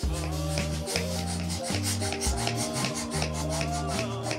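Hand air pump inflating a long pink modelling balloon, heard as rubbing, over background music with a steady bass line.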